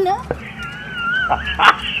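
A high, wavering whimper lasting about a second, ending in a short louder sound near the end.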